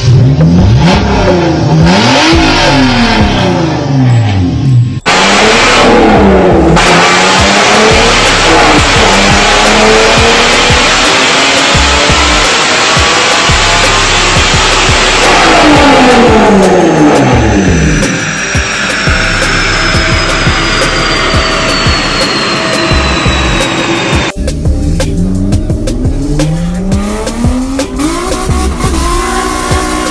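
3.5 L V6 engine being revved hard and repeatedly, its pitch climbing and falling with each blip of the throttle. Worked at first by hand at the throttle linkage, then from the driver's seat.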